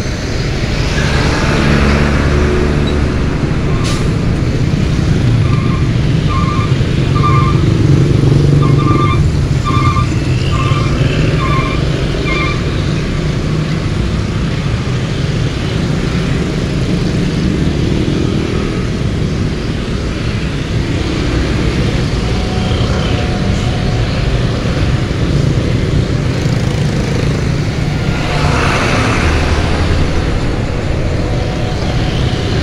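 Dense road traffic heard from a scooter, a steady low rumble of container trailer trucks, cars and motorcycles moving close by, swelling as a truck passes near the start and again near the end. About five seconds in, a string of short, evenly spaced high beeps repeats for about seven seconds.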